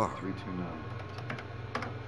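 Typing on a computer keyboard: scattered, irregular keystroke clicks over a low steady hum.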